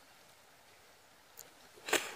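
Faint steady outdoor hiss, with a small click about one and a half seconds in and a short, louder crackle of dry leaves just before the end.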